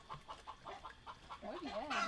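A chicken clucking faintly in a quick run of short notes, about seven a second, with a brief spoken "oh yeah" near the end.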